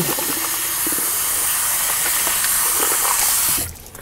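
A loud, steady hiss, strongest in the highest frequencies, that cuts off abruptly near the end.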